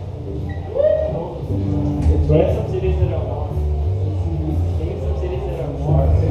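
Electric bass and guitars noodling loosely through the amps before a set, low bass notes held and changing every second or so, with voices talking over them in the room.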